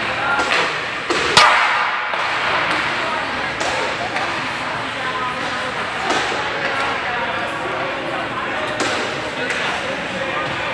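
Ice hockey practice in an indoor rink: sharp cracks of pucks being shot and striking the boards. The loudest comes about a second and a half in, and fainter ones follow every few seconds over a steady murmur of indistinct voices and rink noise.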